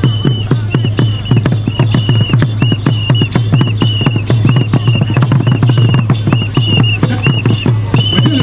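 Acholi traditional dance drumming with fast, dense drum strokes, over which a high whistle is blown in short repeated blasts, about two a second.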